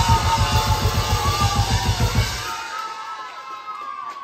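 Live rock band playing a loud burst of fast, evenly pulsing low notes under crashing cymbals, which cuts off about two and a half seconds in; the cymbals and room ring on and fade.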